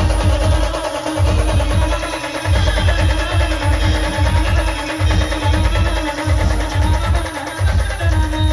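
Loud live band music played through large speaker cabinets. A drummer strikes electronic drum pads with sticks, giving a heavy, repeating bass beat under a held melody line.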